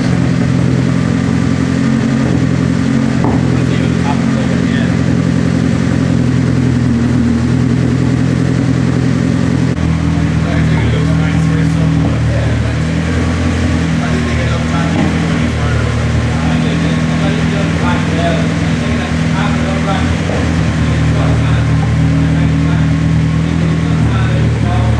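Turbocharged Honda K24 inline-four engine in a Nissan Silvia S15 running loudly at a steady speed on a chassis dyno. Its note changes about ten seconds in.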